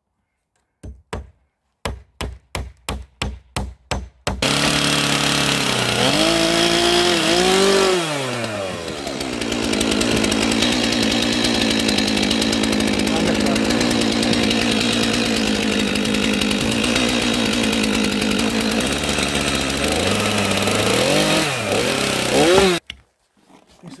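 Hammer driving a nail into wooden boards with a quick run of about four strikes a second, then a chainsaw that runs loudly for most of the rest, revving up and down near its start and again near its end before cutting off suddenly.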